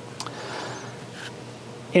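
Quiet room tone in a lecture hall during a pause in the talk, with a faint low hum and a single small click about a fifth of a second in.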